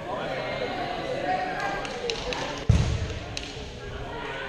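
Voices in a large, echoing gymnasium, and one loud thud about two-thirds of the way in, a rubber dodgeball hitting a hard surface, its boom ringing on briefly in the hall. A few light clicks come just before it.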